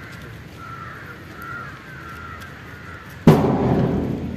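Faint wavering bird calls, then a sudden loud crash a little over three seconds in that dies away over about half a second.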